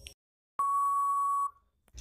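Quiz countdown timer's closing beep: one steady electronic tone lasting about a second, sounding as the countdown runs out.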